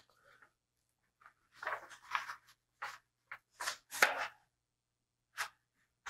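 A large sheet of paper being flexed and bent into a curve by hand, rustling and crackling in a series of short bursts, loudest about four seconds in.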